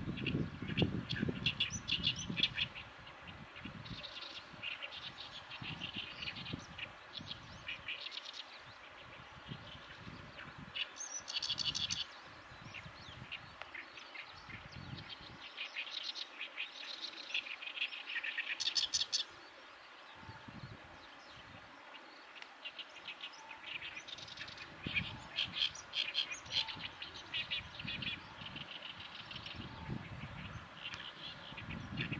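Oriental reed warbler singing its loud, harsh, grating "gyo-gyo-shi" song in repeated chattering phrases, with two louder buzzy bursts about eleven and eighteen seconds in. A low rumble sits under the song in the first two seconds.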